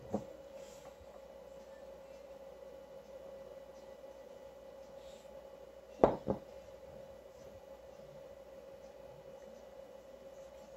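A quiet room with a steady faint hum. There is a short click right at the start, and two sharp knocks about a third of a second apart some six seconds in.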